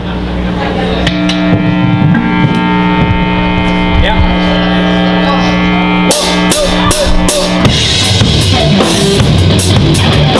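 Live rock band starting a song: an amplified electric guitar holds one sustained chord for several seconds, then the drum kit comes in with cymbal and drum hits about six seconds in, and the full band plays from about eight seconds.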